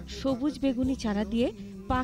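A voice speaking continuously, over a steady low hum.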